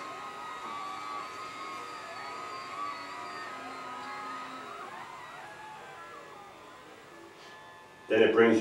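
Electric actuator motors of a Permobil F5 VS standing power chair running as the chair raises into the standing position. The whine comes as several thin tones that step and glide in pitch, two crossing each other midway, and it grows slightly fainter toward the end.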